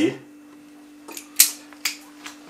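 A metal utensil tapping three times on the rim of a stainless-steel frying pan, knocking minced garlic off into the pan, the middle tap the loudest, over a steady low hum.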